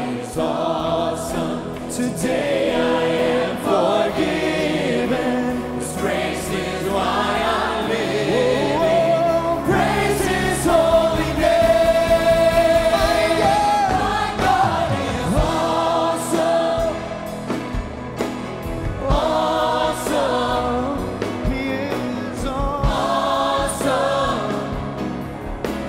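Church praise team and choir singing a gospel worship song with accompaniment, a young male soloist leading on microphone, with one long held note near the middle.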